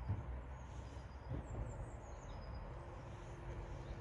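Quiet outdoor ambience: a steady low rumble with a few faint, distant bird chirps.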